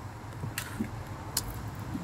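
Quiet outdoor background with a steady low rumble and two light clicks, about half a second and a second and a half in, as a plastic-packaged wax bar is handled.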